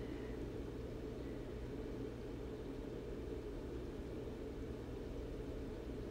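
Steady low hum and hiss of background room noise, even throughout, with no clicks or handling sounds standing out.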